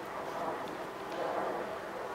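Steady outdoor background noise with a faint, even drone underneath.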